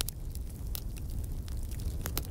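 Fire crackling: irregular sharp pops and snaps over a steady low rumble.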